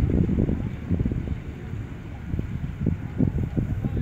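Wind buffeting the microphone: a low rumble that rises and falls in gusts.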